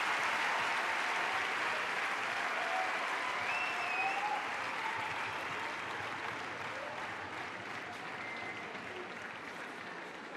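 Large arena audience applauding, slowly dying away, with a few short cheers and whistles rising over the clapping.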